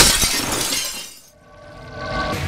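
A sudden crash of shattering glass as a sound effect, dying away over about a second. Music begins to come in near the end.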